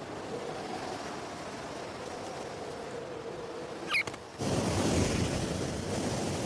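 Steady rushing wind with a short high bird chirp about four seconds in. Just after the chirp the wind suddenly grows much louder and deeper, like a strong gust.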